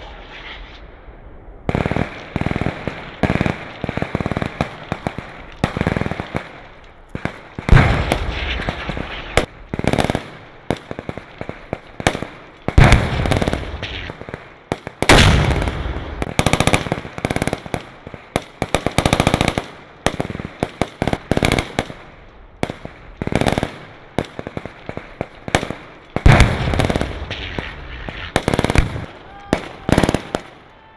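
Small-arms gunfire in a field exercise: irregular single rifle shots and short automatic bursts, dozens of them, many with an echoing tail.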